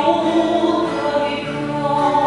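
Singing accompanied by a strummed twelve-string acoustic guitar, with long held notes.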